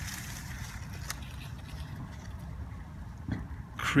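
Steady low outdoor rumble with a faint hiss over it, and a light tick about a second in.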